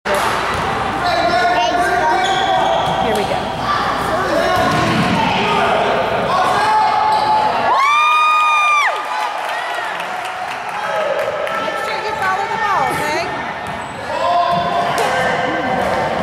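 Basketball gym during a game: the ball bouncing on the hardwood floor while players and spectators call out. About halfway through, a loud single-pitched tone sounds and holds for about a second.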